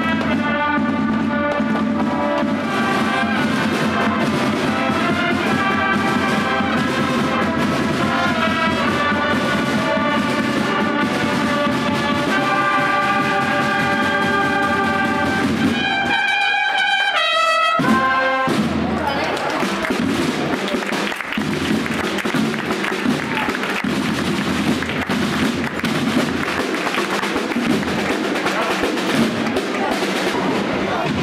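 Procession band music: trumpets and trombones playing a slow march melody with drums underneath. About 18 seconds in, after a short break, the sound changes to a drum corps beating snare and bass drums with little or no melody.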